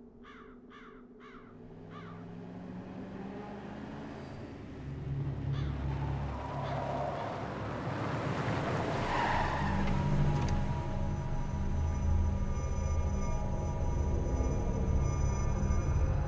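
A crow caws four times in quick succession. Then a low rumble with several long held tones builds steadily louder.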